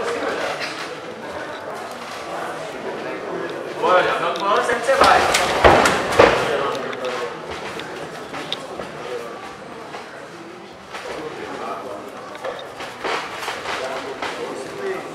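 Several voices of spectators and cornermen shouting at once. The shouting swells loudest for a couple of seconds around the middle and then falls back to scattered calls.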